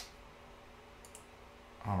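Computer mouse clicks: a sharp click at the start and a fainter one about a second in, over a quiet room, before a voice comes in near the end.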